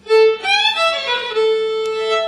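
Solo violin played by the band's primás (lead violinist): a short phrase of a held note, a quick run of sliding notes, then another long held note.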